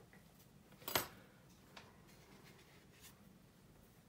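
Small handling sounds at a hobby bench. There is one sharp tap about a second in, then a couple of faint clicks, as small modelling tools and the plastic model are put down and picked up on a cutting mat. Low room tone lies between them.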